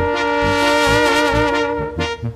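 Regional Mexican band music: the brass section holds a long sustained chord between sung lines, over pulsing bass notes.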